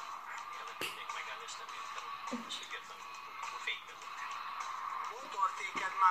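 Television sound picked up through the room: background music playing steadily, with a short voice near the end.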